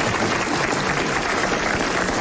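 Studio audience applauding: steady, dense clapping.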